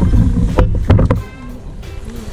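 Wind buffeting the camera microphone: a loud, irregular low rumble with a few sharp gusty cracks, dying down after a little more than a second.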